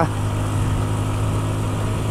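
Motorcycle engine running steadily while riding, a constant low hum under steady road and wind noise.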